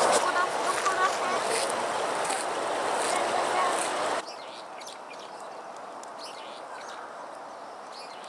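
Outdoor park ambience: a murmur of distant people's voices with small birds chirping now and then. About four seconds in it drops abruptly to a quieter background with faint high chirps.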